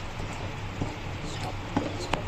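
Spatula stirring thick semolina upma in an aluminium kadai, with a few soft irregular knocks and scrapes against the pan as it is kept moving so lumps don't form. A steady low hum runs underneath.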